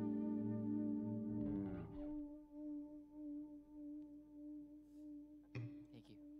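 An electric guitar band's final chord ringing out and dying away about two seconds in, leaving a single soft, wavering electric guitar note held on. A short string noise or pluck sounds near the end.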